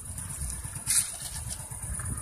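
Wind buffeting the phone's microphone in a low, irregular rumble, with a sharp click about a second in.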